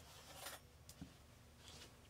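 Near silence: room tone, with a couple of faint small knocks.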